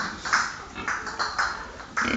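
Rapid, evenly repeated metallic pings, about three a second, each ringing briefly.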